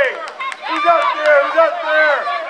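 Several high-pitched voices shouting and calling out over one another, loud and overlapping.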